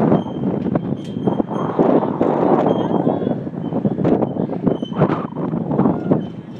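Wind buffeting the microphone in uneven gusts, a loud rushing noise.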